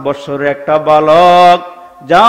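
A man preaching into a microphone in the chanted, sing-song delivery of a Bengali waz sermon. A long drawn-out note comes about halfway through.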